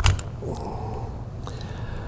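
A single sharp metallic click as the hinged trigger guard of a Japanese Type 26 revolver is unlatched and swung down to release the side plate, followed by faint handling noise and a light tick.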